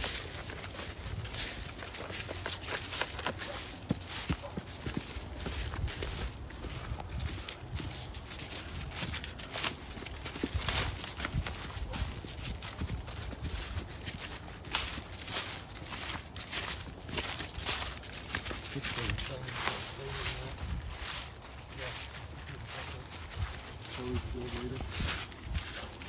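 Footsteps crunching and rustling through dry leaf litter on a forest path, an irregular run of steps.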